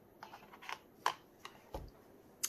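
A few light clicks and rustles of a gloved hand handling cups, then a short soft thump near the end as a plastic measuring cup is set down on the silicone mat.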